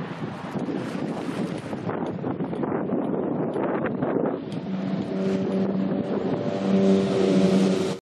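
Wind buffeting the microphone over the wash of open sea. About five seconds in, a steady low hum with overtones joins it in a few held stretches and grows louder near the end.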